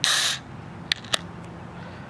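A shaken can of caramel coffee being opened by its pull tab: a short burst of hiss as the seal breaks, then two sharp clicks about a second in.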